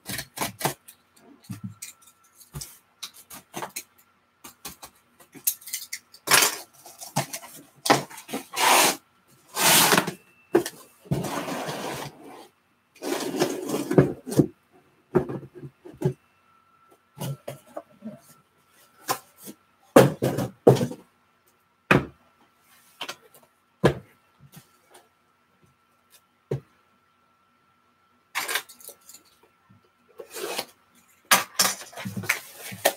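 Handling of a taped cardboard case: bursts of rustling, scraping and tearing as it is opened in the first half, then a few sharp knocks as the shrink-wrapped boxes inside are handled and set down.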